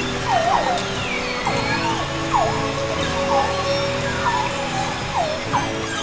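Beluga whales whistling underwater: a series of short swooping whistles, roughly one a second, with a longer falling-then-rising whistle about a second in, over a steady low drone.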